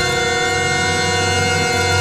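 A dramatic music sting from the studio orchestra: one loud chord held steady, with a low rumble underneath.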